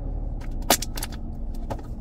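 Steady low rumble inside a car's cabin. About two-thirds of a second in there is one sharp click, then a couple of lighter knocks, as a hand handles the phone that is recording.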